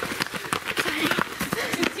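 Quick, overlapping running footfalls of several cross-country runners passing close by on a dirt trail covered in dry leaves.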